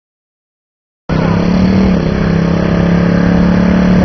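Chevrolet 327 small-block V8 in a Model A rat rod, held at high revs through a burnout with the rear tyres spinning. It starts suddenly about a second in, steady and loud, and its pitch dips briefly near the middle.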